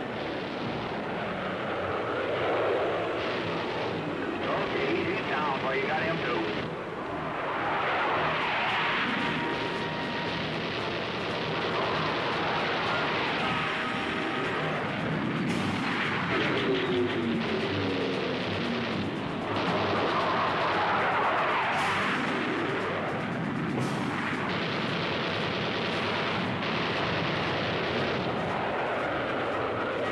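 Orchestral film score mixed with jet aircraft noise, with a few sharp bangs of gunfire about halfway through and again a little later.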